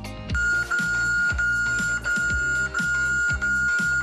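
A smartphone voice-phishing alert app's warning tone: a loud, steady high beep repeated about six times with only tiny gaps. The tone is the signal to hang up at once because the call is suspected voice phishing. Background music with a steady beat plays underneath.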